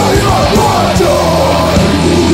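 Heavy metal band playing full out: distorted guitars, bass and pounding drums, with a yelled vocal line over them.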